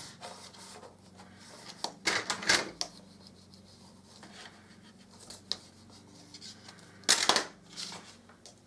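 Card and craft items being handled on a table: scattered small clicks and taps, with a louder short clatter near the end.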